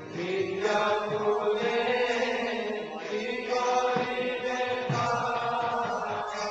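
Devotional chanting sung as kirtan: long, held sung notes over musical accompaniment, with a low drum-like stroke about five seconds in.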